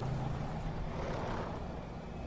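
Car engine running with a steady low rumble, heard on a TV drama's soundtrack.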